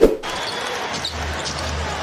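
A sharp thump with a short echo right at the start, then the steady noise of a basketball arena during play: crowd murmur over a low hum.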